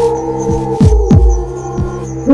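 Suspense soundtrack: a steady held drone under deep thuds that drop in pitch, coming in pairs like a heartbeat.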